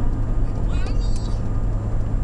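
Steady low road and engine drone inside a moving car's cabin, with a child's high voice sounding out briefly about a second in and again near the end.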